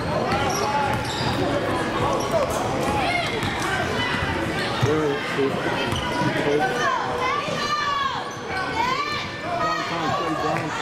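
A basketball being dribbled on a hardwood gym floor, with players and spectators shouting over it, echoing in the large gym.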